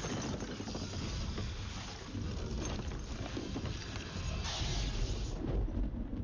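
Dense movie-trailer sound effects: a heavy low rumble under a rushing noise, which swells brighter about four and a half seconds in.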